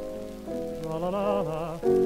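Piano chord dying away, then a male voice comes back in about half a second in with a held, wavering note with vibrato over soft piano, and a new piano chord just before the end; the crackle of an old shellac record runs underneath.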